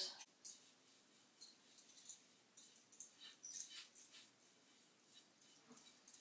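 Faint, scratchy dabs of a small paintbrush on a metal pizza pan, in short irregular strokes.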